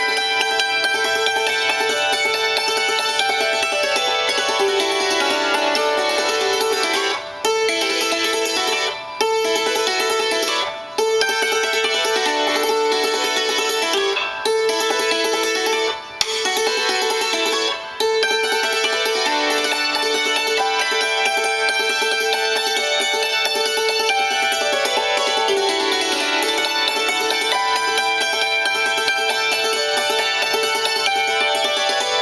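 Hammered dulcimer (Hackbrett) struck with two hand-held hammers, playing a fast, dense run of ringing notes. Several brief breaks in the music fall between about seven and eighteen seconds in.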